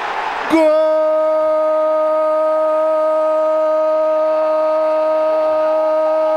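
A Brazilian football commentator's drawn-out goal cry, 'Gooool', held as one long steady shouted note for about six seconds after a goal. It starts about half a second in, after a brief burst of crowd noise.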